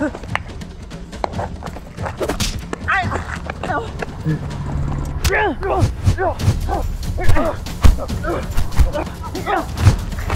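Staged fight: several people yelling and grunting in short bursts as they trade blows, with sharp hits of punches and kicks landing among the shouts, the hardest about eight and nine seconds in.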